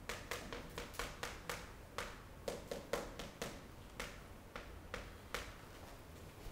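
Chalk tapping on a chalkboard as equations are written: an irregular run of sharp, short taps, several a second.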